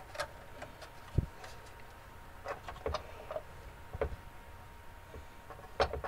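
Scattered knocks and clicks of wooden parts and tools being handled on a workbench, with one low thump about a second in and small clusters of taps later on.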